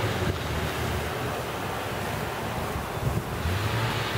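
Wind blowing across the camera's microphone: a steady rushing noise with an uneven low rumble.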